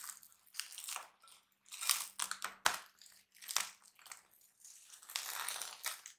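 Plastic cling film being pulled off a glass bowl and crumpled, in a run of irregular crinkling crackles with a sharp crackle a little over halfway through.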